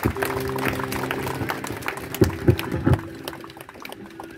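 Electronic keyboard holding a sustained chord that fades out, with three short low thumps a little past two seconds in.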